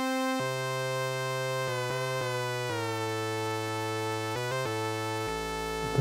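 Analogue synthesizer: an Arturia MicroBrute played from its keyboard, with a Korg Monotribe's oscillator fed into its external audio input as a second tone source. A single held buzzy note steps and slides between pitches several times, then settles into a lower drone near the end.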